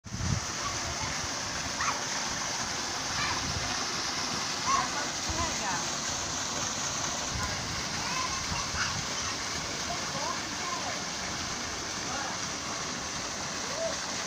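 Steady rush of water pouring from a pipe spout into a shallow pool, with splashing from people wading in it. Faint voices are heard now and then over the water.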